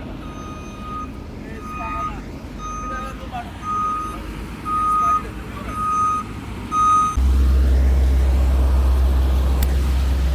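Reversing alarm of a heavy construction vehicle beeping about once a second, each beep louder than the last. About seven seconds in, a loud low rumble starts suddenly and drowns the beeps out.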